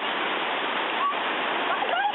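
Steady rushing water, with a few short high-pitched voice sounds over it about a second in and near the end.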